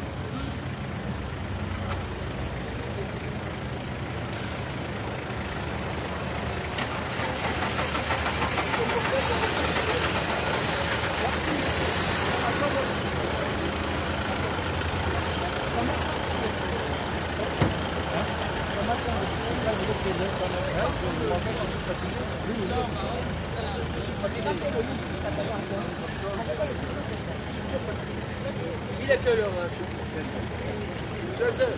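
Indistinct crowd voices with a car engine running at idle close by. The overall noise swells for several seconds about a third of the way in, and a few sharp knocks come near the end.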